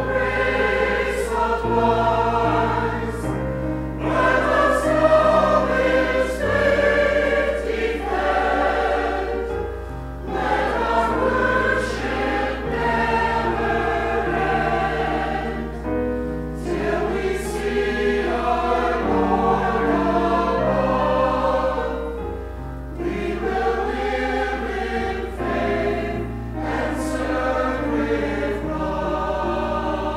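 Mixed choir of men and women singing together, with keyboard accompaniment underneath.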